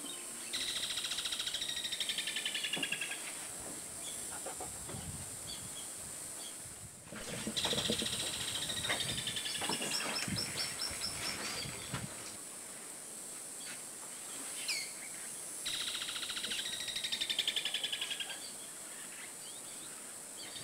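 Outdoor nature ambience: a bird's rapid trill, repeated three times at intervals of several seconds, each lasting about three seconds, over a steady high insect hiss.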